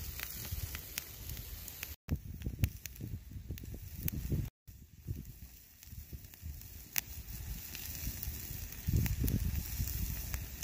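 Wood campfire crackling with scattered sharp pops, and a meat patty sizzling on a handheld iron grill over the flames. Uneven low rumbling gusts run underneath. The sound cuts out briefly twice.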